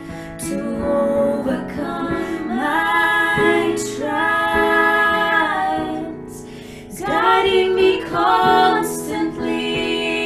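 Two women singing a slow gospel song together, accompanied on a Yamaha digital piano. Sung phrases carry over sustained piano chords, softening briefly past the middle before a fuller phrase.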